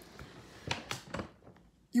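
A few soft clicks and knocks, about three close together, from the switched-off upright vacuum being handled; no motor is running.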